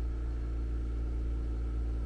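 Steady low machine hum, like a running motor, holding even with no change.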